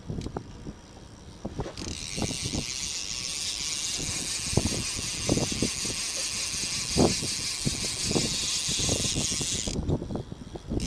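Fishing reel being wound while a hooked fish is played: a steady, high mechanical whirring that starts about two seconds in and stops just before the end, with scattered knocks from handling the rod.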